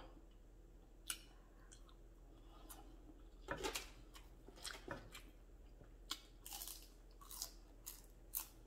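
Quiet close-up chewing of a mouthful of chicken lo mein noodles: irregular soft wet smacks and clicks from the mouth, a little louder in the middle and again near the end.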